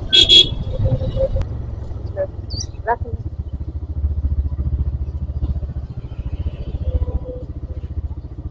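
TVS Raider 125's single-cylinder engine running at low speed, heard close up from the rider's seat. A vehicle horn honks briefly right at the start.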